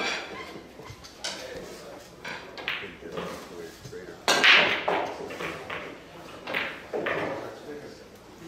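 A 9-ball break shot about four seconds in: a sharp, loud crack as the cue ball smashes into the racked balls, followed by a few scattered clicks as the balls hit one another and the cushions.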